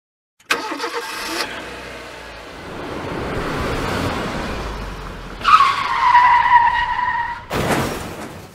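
Car sound effect: a car running and passing, then a tyre screech of about two seconds, cut off by a loud noisy burst near the end, a crash.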